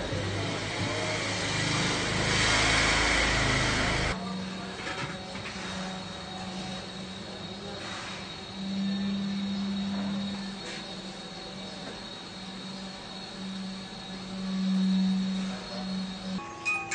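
A motor hum that swells louder twice. Before it comes a loud rushing noise with low rumble that cuts off abruptly about four seconds in.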